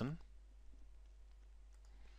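The last word of a man's narration, then near silence with a faint low hum and faint computer mouse clicks as an item is picked from a dropdown list.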